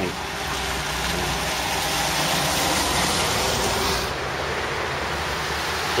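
A car driving past on a wet road: the hiss of its tyres on the wet tarmac swells over the first few seconds and drops off about four seconds in, over a low engine hum.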